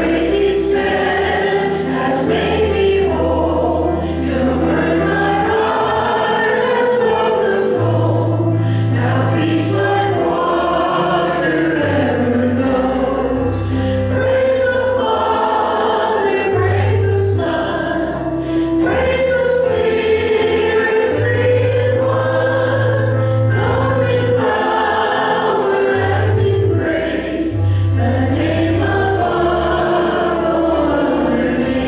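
A church worship team sings a worship song, male and female voices through microphones, over instrumental accompaniment with long held bass notes.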